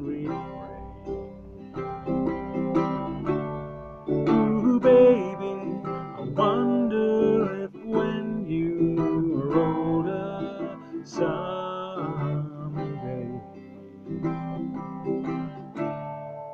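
Small-bodied acoustic guitar played as song accompaniment, repeated chords ringing on. A man's voice sings over parts of it.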